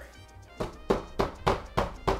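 A run of sharp, evenly spaced claps, about three a second, starting just over half a second in, over steady background music.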